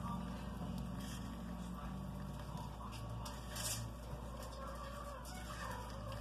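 A spatula stirring and scraping stiff buttercream frosting in a small plastic cup, with a few short scrapes, over a steady low hum. Faint short pitched calls sound in the background near the end.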